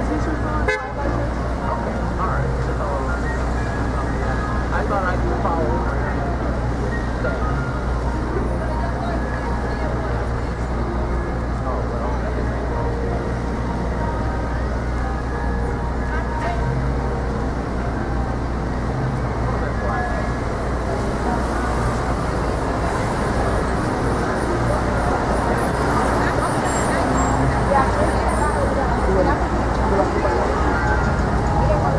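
Busy city street traffic: cars and trucks passing with engines running over a steady murmur of pedestrians' voices, and a car horn toots. The traffic gets a little louder near the end as a vehicle passes close by.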